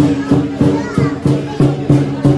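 Lion dance percussion band playing: drum, cymbals and gong striking a steady beat about three times a second, the metal ringing on between strikes.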